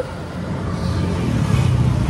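Auto-rickshaw engine running, heard from inside the passenger cab as a low, pulsing rumble that grows louder about halfway through.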